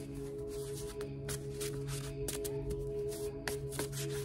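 A deck of paper oracle cards being shuffled by hand, a scattered run of short papery clicks. Underneath is steady ambient background music with a held drone.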